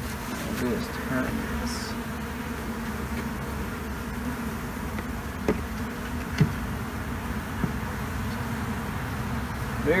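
Honeybees buzzing steadily as a swarm flies around and onto a baited wooden hive box, with a few light taps from a gloved hand on the box around the middle.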